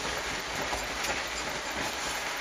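Small steam-boat steam plant at work: a steady rushing noise with a few faint ticks, with no clear regular beat.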